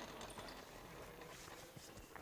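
Quiet room tone of a large gym, with a few faint knocks and shuffles from players moving on the court.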